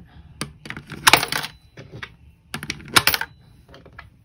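Coins pushed one at a time through the slot of a digital coin-counting jar lid, clicking through the counter and clinking down onto the coins in the jar. There is a single click just before half a second in, then two quick clusters of clicks and clinks, about a second in and near three seconds.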